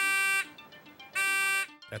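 Electronic buzzer beeping twice, two identical steady half-second beeps about a second apart, as the vital-sign radar robot signals a detected human. Faint background music lies underneath.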